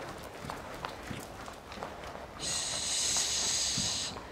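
Faint, soft hoofbeats of a pony trotting on an arena's sand footing. In the second half a steady high hiss with a faint whir comes in, lasts about a second and a half and stops just before the end.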